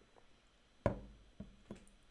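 Three short, sharp knocks a little under a second in: the first is loudest with a brief ringing tail, and the next two are softer and follow within about a second.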